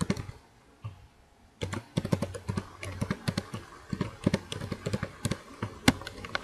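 Typing on a computer keyboard. After a few scattered keystrokes comes a fast, steady run of key presses from under two seconds in. One sharp, louder keystroke lands just before the end.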